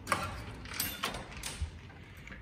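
A door's handle and latch clicking and knocking as the door is worked, four sharp clicks in about two seconds.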